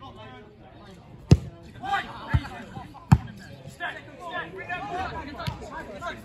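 Football being kicked on a grass pitch: sharp thuds of boot on ball, the two loudest about a second in and about three seconds in, with softer ones between and later. Players and spectators are shouting and talking throughout.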